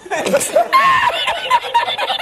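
Laughter in quick repeated bursts, a reaction to the punchline of a joke just told.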